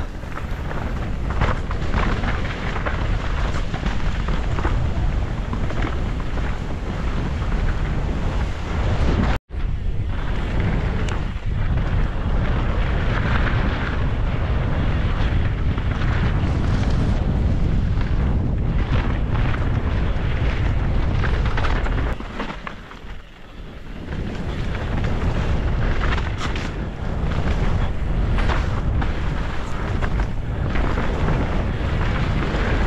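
Wind buffeting the camera microphone and tyres rolling over a dirt and rock trail as a downhill mountain bike descends at speed. The sound cuts out for an instant about nine seconds in and drops quieter for a moment a little past twenty-two seconds.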